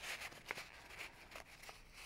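Faint rustling of toilet paper being stuffed by hand into a glued paper cutout, with a few soft ticks of paper handling.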